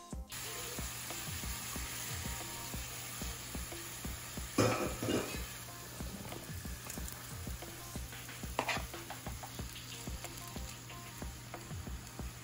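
Shrimp sizzling in a hot frying pan. Louder bursts of sizzle and clatter come as halved grape tomatoes are tipped in and stirred with a wooden spatula.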